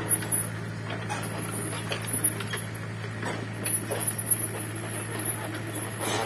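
Kobelco mini excavator's diesel engine running steadily with a low hum, with a few faint knocks.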